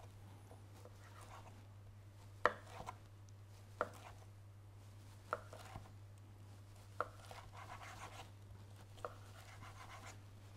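Chef's knife slicing fresh pineapple into sticks, each stroke ending in a sharp tap on a plastic cutting board: five separate strokes, roughly one every one and a half seconds, starting a couple of seconds in. A low steady hum runs underneath.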